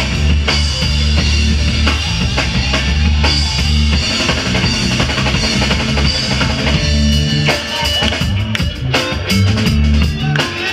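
A live band plays an instrumental groove: drum kit, electric guitars and keyboards over a heavy bass line, with no singing.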